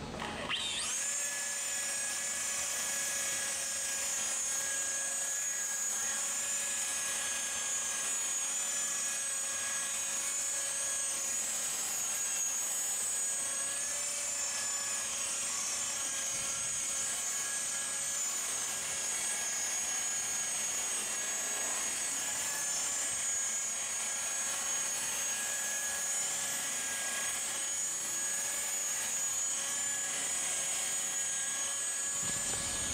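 Rotary polisher with a wool pad running on a car's paint, buffing out swirl marks. It spins up with a rising whine in the first second, then holds a steady high whine.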